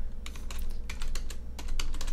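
Computer keyboard keys typed in a quick run of about six keystrokes.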